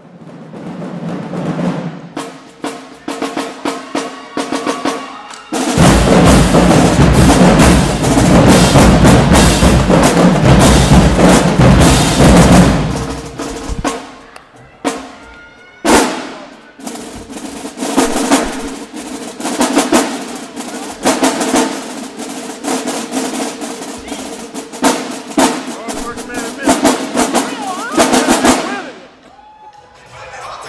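Marching drumline of snare drums, bass drums and cymbals playing a cadence. A loud full-section passage with heavy bass drums runs from about six to thirteen seconds, a single big accent comes near sixteen seconds, then rhythmic snare patterns continue and stop just before the end.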